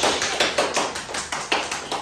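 Applause: hands clapping quickly and steadily, about five or six claps a second.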